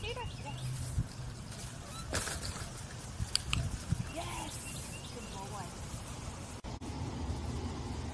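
A dog-agility teeter-totter board knocks a few times as a puppy walks across it and it tips, sharpest a little after halfway. Short chirping calls sound faintly behind. About three-quarters of the way through the sound cuts off abruptly into a steadier indoor background.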